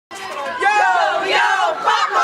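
A group of women's voices calling out loudly together in one drawn-out group shout.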